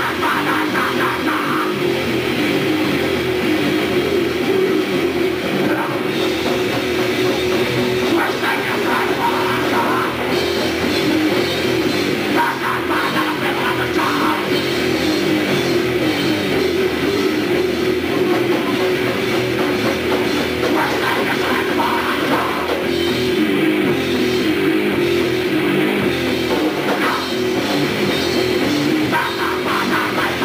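Grindcore band playing live: distorted guitar and drum kit in a loud, dense, unbroken wall of sound, heard from the audience in the hall.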